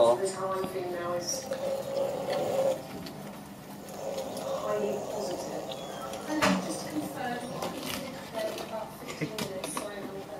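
Electric hub motors of homemade roller skates whining as the skates run slowly, the pitch wavering as the speed changes, with a sharp knock about six and a half seconds in.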